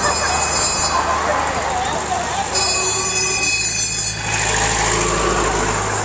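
Convoy trucks and vehicles passing on the road, a steady engine rumble, with two spells of a high-pitched ringing tone, one just at the start and one from about two and a half to four seconds in.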